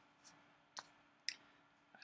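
Near silence: room tone with a faint steady hum and three short clicks about half a second apart.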